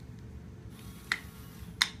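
Two short, sharp clicks of small plastic toy parts being handled, about three quarters of a second apart, with a soft rustle just before the first.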